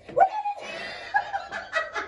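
A woman laughing hard. The laugh breaks out suddenly just after the start and then runs on in quick repeated bursts.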